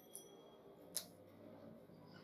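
Near silence, with a single short, faint click about halfway through.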